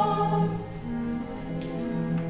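Church choir singing: a held chord fades away about half a second in, and the choir carries on more softly over a steady low note.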